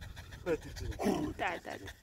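French bulldog panting with its mouth open, with people's voices over it.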